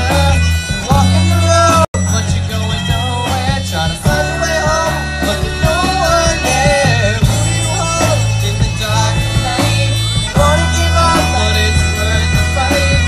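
Live country band music, a girl singing lead over fiddle, guitars and drums, with a steady bass line. The sound cuts out for a moment about two seconds in, then the music resumes.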